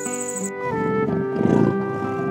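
Background music with a steady melody. About three-quarters of a second in, a big cat's rough, pulsing roar joins it, loudest near the middle and fading out just after the end.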